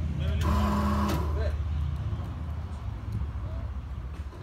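An engine running steadily at idle with a low rumble, easing off over the last two seconds, most likely the scissor lift's power unit. A man's voice calls out briefly about half a second in.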